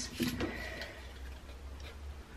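Faint handling sounds of thin card strips being set down and adjusted on a tabletop, a few light clicks over a low steady room hum.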